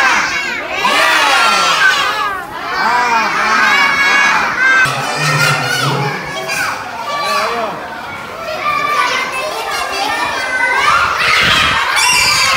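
A crowd of young children shouting and cheering together, many voices overlapping throughout.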